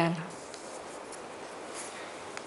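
The end of a spoken word, then quiet small-room tone with a faint, steady hiss and a faint rustle near the end.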